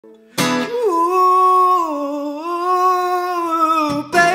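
A man sings one long held note to open an acoustic cover, with an acoustic guitar struck once about half a second in and ringing beneath the voice.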